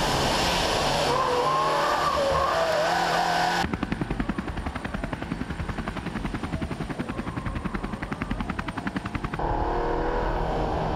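Leon Cupra 280's turbocharged four-cylinder engine and tyres at racing speed, with wavering tyre squeal through a corner. About four seconds in, the sound cuts abruptly to an even, rapid beating of about ten pulses a second with a thin high whine, and the car sound returns near the end.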